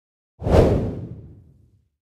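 A single whoosh sound effect with a deep low end. It comes in suddenly about half a second in and fades away over about a second.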